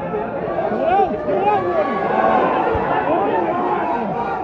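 Football crowd shouting, many voices overlapping, louder from about a second in as a goalmouth attack builds.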